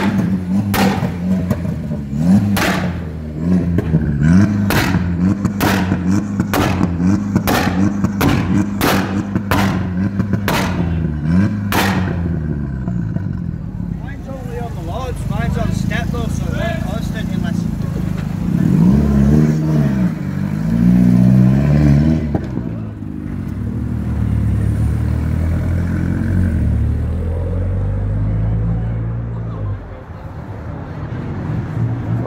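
Tuned VW/SEAT 2.0 TSI turbocharged four-cylinder hot-hatch engine held at steady high revs while a pop-and-bang map fires a rapid string of sharp exhaust bangs, well over one a second, for about twelve seconds. The bangs then stop and the engine settles back to idle, with a couple of throttle blips about twenty seconds in. The result is really loud.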